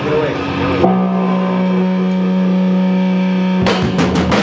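Live rock band: one amplified electric guitar note is held and rings on steadily for nearly three seconds, then the drums and the rest of the band crash back in just before the end.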